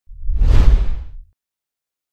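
An intro whoosh sound effect with a deep bass rumble under it, swelling quickly to a peak and then fading out, ending about a second and a quarter in. It serves as the sting for a logo reveal.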